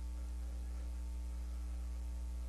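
Steady electrical mains hum, a low drone with a series of fainter higher overtones, unchanging throughout.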